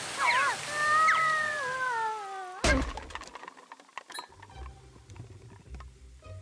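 A cartoon ant character's long, high cry that slides down in pitch as it flies through the air, cut off by one sharp landing thud about two and a half seconds in. Faint small clicks and taps follow.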